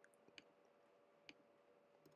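Near silence with a few faint, sharp clicks from working a computer while copying and pasting code into an editor, the clearest about half a second in and just past a second in. A faint steady hum lies under them.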